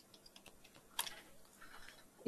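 Faint typing on a computer keyboard: several light keystrokes, with one sharper stroke about a second in.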